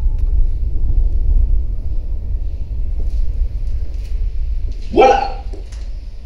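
A deep, steady low rumble that fades over the last second. About five seconds in, one short, loud pitched cry rises above it.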